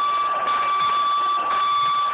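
Boxing timekeeper's electronic buzzer sounding one long, steady tone that signals the start of a round.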